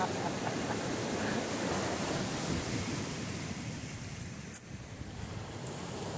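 Sea surf washing over a rocky shore, a steady rush of water with wind on the microphone.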